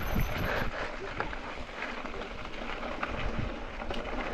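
Mountain bike rolling downhill on a dirt and gravel singletrack: steady tyre noise on the loose surface with a few short knocks and rattles from the bike over bumps, and wind on the microphone.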